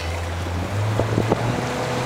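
Tour boat's motor running steadily, its low hum stepping up slightly in pitch before the first second, with wind rushing over the microphone.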